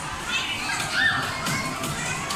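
Children playing and calling out in a busy indoor play area, with a general hubbub of young voices. One high child's call rises and falls about a second in.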